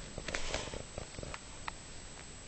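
Domestic cat grooming herself: a run of short, irregular licking clicks from her tongue, thinning out toward the end.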